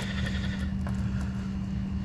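A steady low hum with an even faint hiss, and one faint click a little under a second in.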